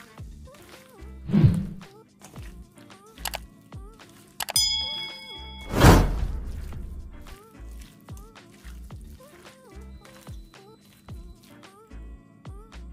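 Background music with a steady beat over raw chicken being mixed by hand in a stainless steel bowl. The bowl knocks twice, loudest about six seconds in, and rings briefly in between.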